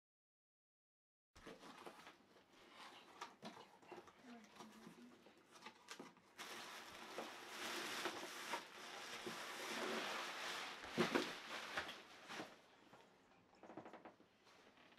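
Rustling and crinkling of plastic packaging and cardboard as a folded inflatable decoration is pulled out of its shipping box, with scattered handling clicks; the rustling is densest from about six seconds in to about twelve.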